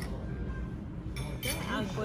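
A short clink of glass or tableware about halfway through, over voices at the table.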